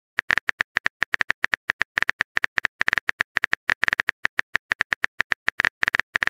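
Rapid, irregular phone-keyboard typing clicks, about ten a second: a texting-app sound effect for a message being typed.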